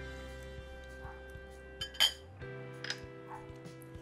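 Background music with steady held chords. About halfway through comes one sharp glass clink, from the hand mixing seasoned liver knocking against the glass bowl.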